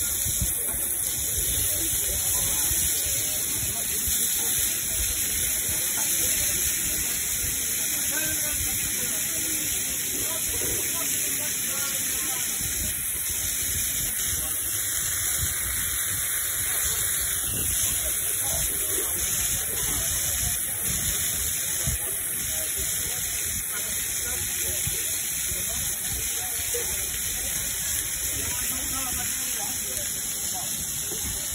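Chicken pieces sizzling on a hot flat-top griddle: a steady, unbroken hiss.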